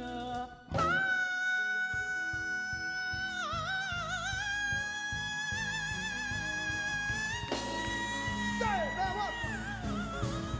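A male soul singer's falsetto holding one long high note with vibrato over the band's backing. It steps up higher about two-thirds of the way through, then falls away near the end.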